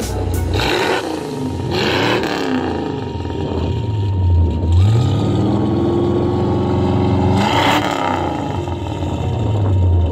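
1973 Cadillac Eldorado's 8.2-litre V8 revved while parked, heard at the exhaust: the revs rise and fall a few times, climb about halfway through, are held up for a few seconds, then drop back. Background music plays underneath.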